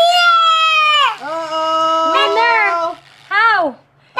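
A young child's high-pitched voice making drawn-out wordless calls: one long call of about a second, a longer one after it, and a short call that rises and falls near the end.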